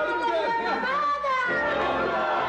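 Several voices talking and exclaiming over background music, the soundtrack of a children's TV scene.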